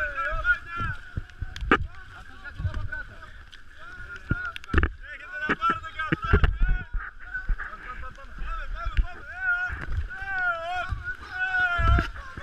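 Rafting paddles splashing and knocking against the inflatable raft in irregular strokes, with low rumbling wind and water noise on the microphone. People's voices call out over it, more so near the end.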